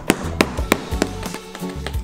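Background music with a steady bass line and a sharp tapping beat, about three taps a second in the first half.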